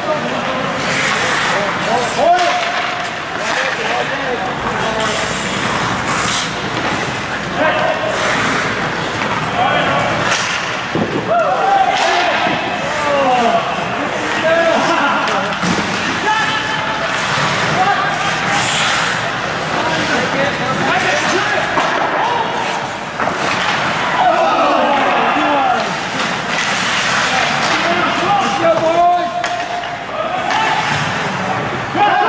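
Ice hockey play in a rink: players' indistinct shouts and calls over a steady echoing din, with scattered sharp clacks and slams of sticks and puck, some against the boards.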